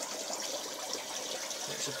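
Steady trickling and bubbling of water from aquarium filters and air stones running in several tanks.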